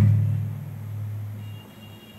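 Low steady hum of a public-address system through a pause in a sermon, with the preacher's amplified voice dying away in the hall at the start.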